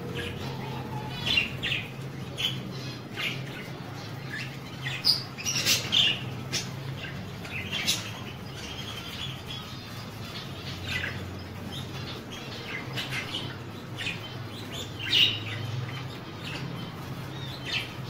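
Budgerigars calling in short chirps and squawks while flapping their wings in a water dish, over a steady low hum.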